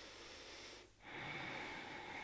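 A woman's deep breath through the nose: a long breath in, then a long breath out starting about a second in.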